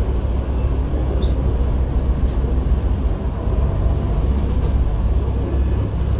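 Steady low background rumble with a few faint ticks.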